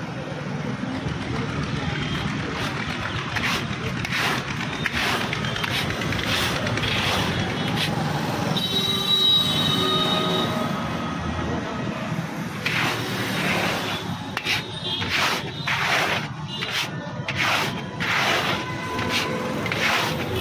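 Busy street ambience: traffic noise with music and voices in the background. A few held tones come through for about two seconds near the middle.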